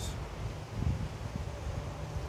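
Wind buffeting the microphone: an irregular low rumble, with a small thump about a second in.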